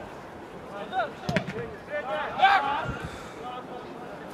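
Players' voices calling out across an open-air football pitch, loudest a little past halfway, with a single sharp knock about a second and a half in.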